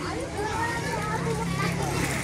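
Many children playing and talking at once in a busy pool, their voices overlapping, with a steady low hum underneath from about half a second in.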